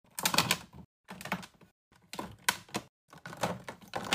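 Plastic makeup tubes and lipstick cases clicking and clacking against each other and against a clear acrylic drawer as they are set in. The clatter comes in about four short bursts with brief silent gaps between them.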